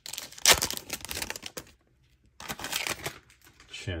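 Foil wrapper of a basketball card pack crinkling and tearing as it is ripped open by hand, in two bursts with a short pause between.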